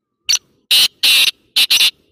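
Francolin (teetar) call: a loud, harsh series of five notes in about a second and a half. A single short note comes first, then two longer ones, then two quick notes close together.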